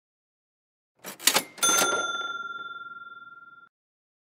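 Notification-bell sound effect: a couple of quick clicks, then a single bright bell ding that rings out and fades for about two seconds before cutting off.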